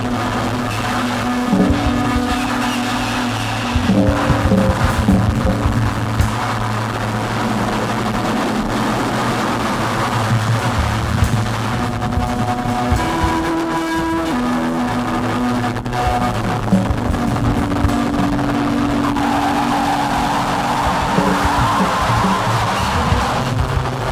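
Live experimental music: an acoustic drum kit played under sustained electronic tones from patch-cabled synthesizer gear. The tones step between a few low pitches every few seconds over a steady low drone, and a band of noise swells near the end.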